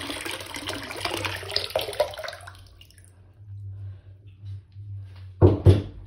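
Water running and splashing into a bathroom sink, stopping about two and a half seconds in, over a steady low hum. Two sharp loud thumps come close together near the end.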